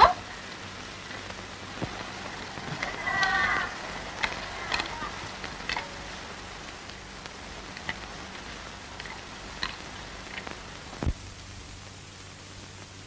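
Steady hiss and scattered clicks from an old optical film soundtrack, with a brief voice about three seconds in.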